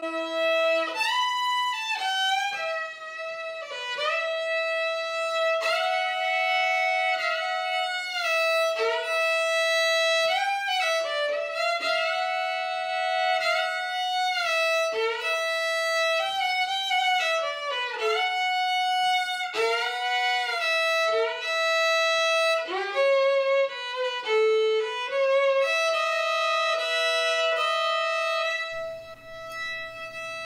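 Solo violin, bowed, playing a slow melody over a steadily held drone note, the notes sustained and joined by slides.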